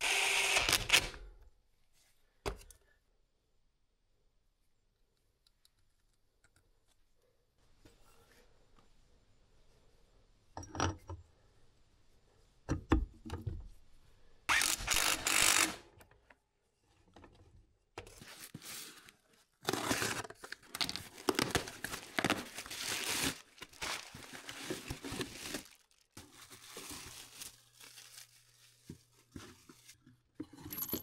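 Cordless impact wrench hammering in two short bursts, once at the very start and again about halfway through as it runs down the flywheel nut. Later comes a long stretch of crinkling and tearing as parts packaging is handled, with small knocks of metal parts being set down.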